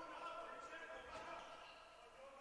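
Faint sports-hall ambience with a couple of faint thuds of a handball bouncing on the indoor court, about a second apart.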